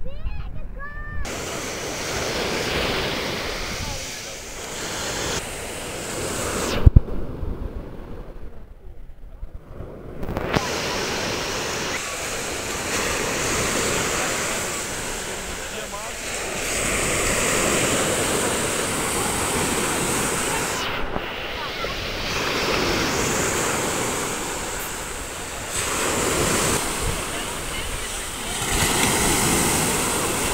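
Sea surf breaking on a sandy shore, a steady rush that swells and ebbs every few seconds. One sharp knock about seven seconds in is the loudest sound, and the sound is briefly muffled for a few seconds after it.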